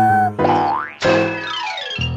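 Cartoon background music with comic sound effects: a quick glide up in pitch about half a second in, then a longer slide down in pitch in the second half, as a cartoon character's jaw and tongue drop in lovestruck surprise.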